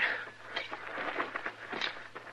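Radio-drama sound effect of footsteps crunching on rocky, gravelly ground: a few irregular steps over a hissy old recording.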